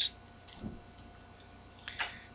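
A few faint ticks of a stylus tapping and writing on a pen tablet, about half a second in and again just before the end, over a quiet room.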